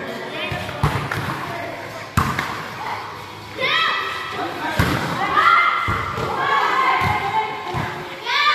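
A volleyball being hit during a rally: three sharp thuds spaced a second or two apart, with players' high-pitched shouts and calls in the middle of the stretch.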